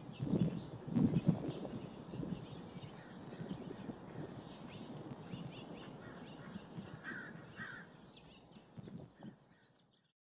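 A small songbird giving a steady series of short, high, thin call notes, about three a second, starting just under two seconds in.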